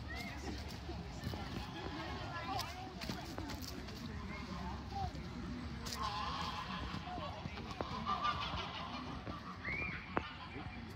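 Geese honking now and then in short calls over a steady outdoor background.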